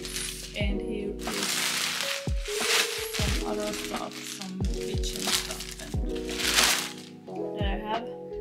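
Background music with a deep, regular beat, over which a black plastic trash bag rustles and crinkles loudly several times as it is handled.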